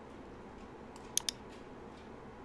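Two quick computer mouse clicks about a tenth of a second apart, a double click, a little past a second in, over faint steady room noise.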